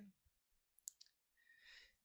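Near silence, with one faint click a little before a second in and a faint breath near the end.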